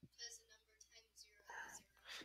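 Near silence with faint, distant voices murmuring briefly twice: students answering quietly.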